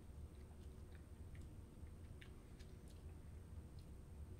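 Near silence: faint scattered mouth and lip clicks of someone tasting beer, over a low room hum.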